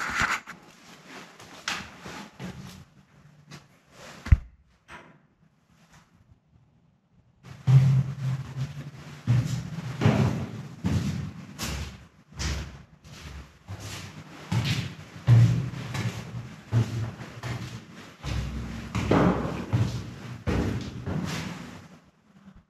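Footsteps climbing a steel spiral staircase with diamond-plate treads: a run of irregular thuds and clanks, with a brief lull about a quarter of the way in.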